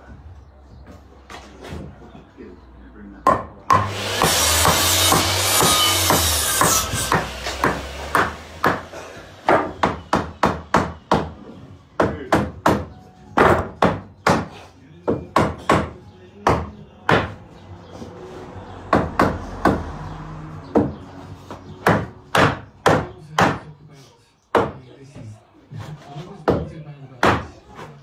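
Hammer blows on timber framing: many sharp strikes in quick, irregular runs, several a second, with short pauses between runs. About three seconds in, a harsh hissing noise lasts some four seconds before the hammering starts.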